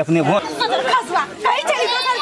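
Only speech: several people talking, their voices overlapping.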